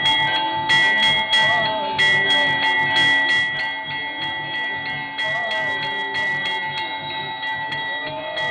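Temple bells ringing continuously during an aarti, a clatter of rapid strikes over their held ringing tones, with a steady drumbeat underneath.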